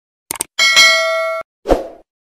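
Subscribe-button animation sound effects: a quick double mouse click, then a bright notification-bell ding that rings for under a second and cuts off sharply, then a brief low thud.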